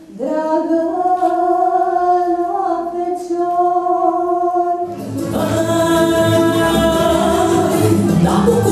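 Young women's voices singing a Romanian folk song together, unaccompanied, in long held notes. About five seconds in, instrumental folk dance music with a steady beat starts.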